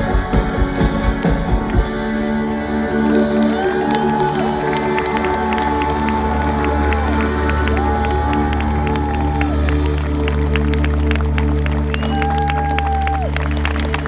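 Live rock band on a large arena sound system: the drum beat stops about two seconds in and a sustained synth chord over a deep bass drone rings on, with long held high notes over it. The crowd cheers and claps throughout.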